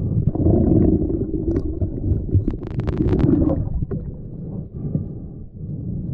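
Muffled underwater rumble and water movement heard through a submerged camera, with a quick run of clicks about two and a half seconds in.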